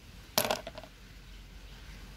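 Clam shells clattering: a shell dropped onto the heap of clams in a clay pot, one sharp clack about half a second in followed by a few quick lighter clicks as the shells settle.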